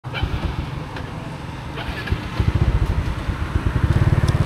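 Street traffic with motorbikes passing, a low rumble that grows louder about halfway through.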